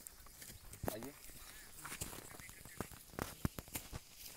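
Footsteps on loose, freshly dug soil: a quick run of short scuffs and thuds in the last second or so, after a brief spoken word about a second in.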